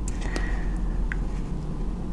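Steady low background hum, with a few faint light clicks from fingers handling and straightening the small plastic-insulated wires of a Cat6 cable.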